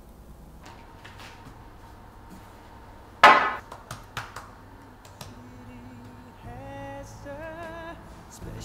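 A drinking glass with ice gives one sharp clink about three seconds in that rings briefly, among a few lighter clicks of glass and ice. Soft music with a melody comes in during the second half.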